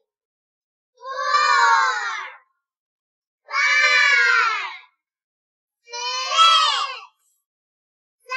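Unaccompanied high voice singing the count in four long, drawn-out notes, each about a second and a half, with short gaps of silence between.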